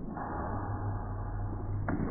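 Muffled audience applause and crowd noise in a hall, over a steady low hum, with a sharp clap near the end.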